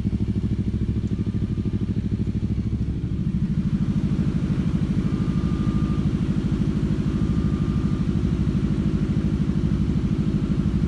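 An engine idling with a lumpy, even beat of about seven pulses a second, growing louder about three seconds in. A few faint short beeps sound over it.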